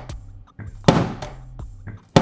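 A built Lego brick model dropped onto a tabletop, landing with one loud, sharp clatter about a second in, over a background music beat.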